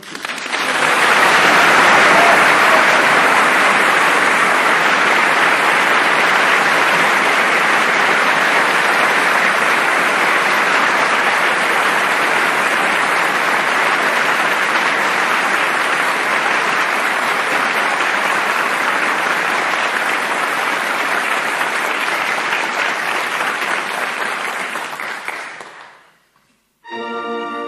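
Theatre audience applauding at the end of a sung number in a live opera performance. The clapping swells within the first second, holds steady and loud, then fades out over the last couple of seconds.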